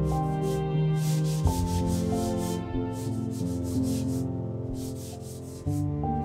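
Paper towel rubbing back and forth over an oil-painted canvas in quick strokes that come in short clusters, wiping away wet paint to correct the drawing, over soft background music.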